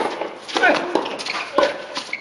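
Tennis racket striking the ball on a serve right at the start, then another sharp ball impact about a second and a half later, with people's voices around.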